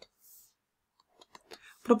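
A few faint, isolated clicks over near silence, then a voice begins speaking just before the end.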